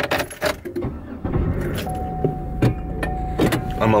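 Car keys jangling with a few sharp clicks, then from about a second in a car engine runs with a steady low hum.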